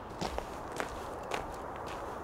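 Footsteps on a gravel path: a few steps about half a second apart.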